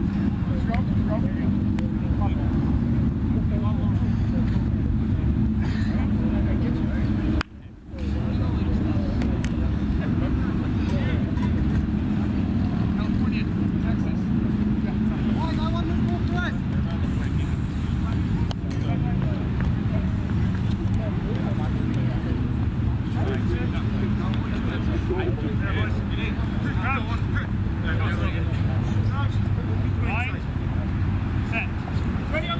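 Faint, distant shouts and calls of rugby players over a steady low rumble, with a brief dropout in the sound about seven and a half seconds in.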